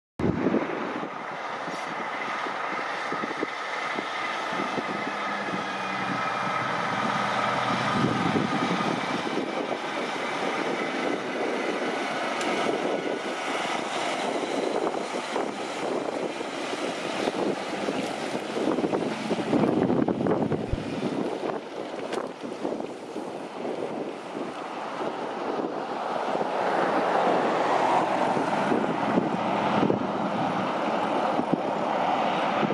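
Road train's diesel prime mover pulling a loaded B-double through a turn, with engine and tyre noise building to its loudest about two-thirds of the way through and then fading. Another vehicle's noise rises again near the end.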